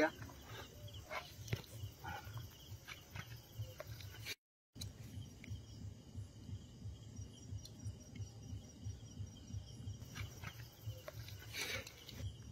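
Quiet night-time outdoor ambience: a low rumble with scattered small handling clicks, and a faint high insect chirp repeating evenly through the second half. The sound cuts out completely for a moment about four and a half seconds in.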